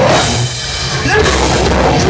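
Live hardcore metal band playing loud distorted guitars, bass and drums; the band stops briefly about half a second in and crashes back in about a second in.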